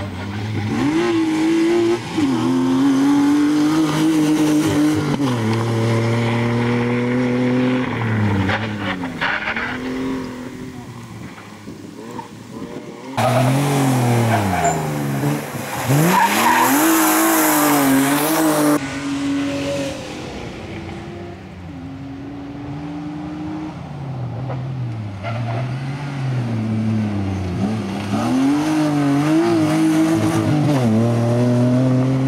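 BMW E36 Compact's engine revving up and dropping back again and again as it is driven hard between tight turns, with tyres squealing and skidding. A loud rush of tyre noise lasts several seconds about halfway through.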